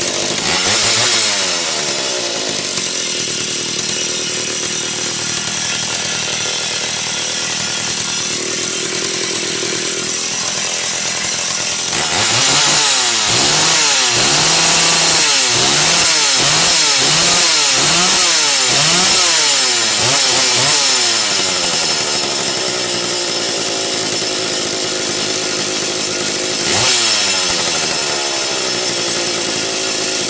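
McCulloch Super Pro 80 chainsaw's two-stroke engine running after a top-end rebuild with a new piston, first settling and running steadily. It is then revved up and down in a string of quick throttle blips, about one a second, and given one more short rev near the end.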